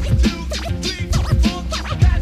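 Hip hop track: a heavy bass-and-drum beat with turntable scratching over it.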